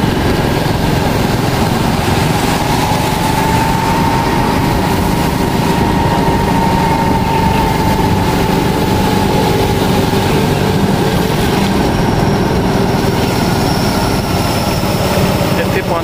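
Honda commuter motorcycle engine running steadily while ridden, with a faint whine that rises and falls gently across the middle.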